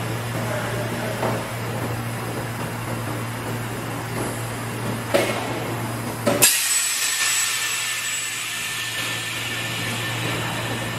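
Semi-automatic PET bottle blow moulding machine: a steady hum with a few knocks as preforms are handled, then about six seconds in a sharp clack followed by a steady high hiss of compressed air, the blowing stage of a 5-gallon bottle.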